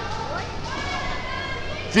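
Ambience of a large indoor hall: indistinct voices with background music, echoing and fairly steady.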